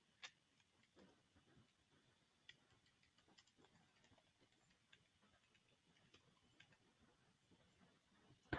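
Near silence, with faint, scattered computer keyboard clicks from typing.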